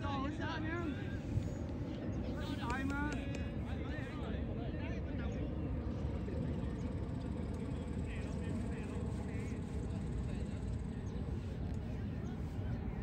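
Distant shouts from players across an outdoor soccer field, strongest at the start and about three seconds in, over a steady low rumble.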